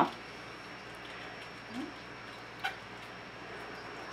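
Quiet room with faint handling sounds of hands moving in a plastic tub, and a single sharp click about two-thirds of the way in.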